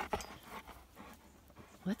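A large dog panting faintly as it pulls a cart over grass, with a short knock right at the start. A woman's voice comes in near the end.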